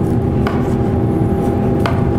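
Broad chef's knife slicing through a grilled tomahawk steak on a wooden cutting board, the blade knocking sharply on the board twice, about half a second in and near the end. A steady mechanical hum runs underneath.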